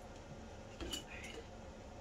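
A single light click of small objects being handled on a table, a little under a second in, beside a softly spoken word.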